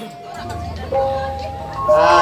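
Banyumasan gamelan music in a quiet stretch: a few held tones ring steadily, a low hum comes in about half a second in, and the sound grows louder just before the end.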